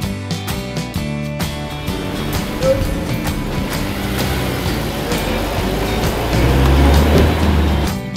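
Background music with a Honda S2000's naturally aspirated 2.0-litre VTEC four-cylinder running under it as the car pulls away, the engine growing louder and loudest near the end.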